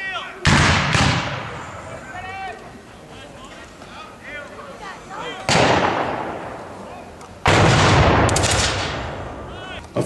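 Black-powder blank shots firing in three loud reports, about half a second, five and a half and seven and a half seconds in, each fading slowly, the last a ragged volley of several shots close together.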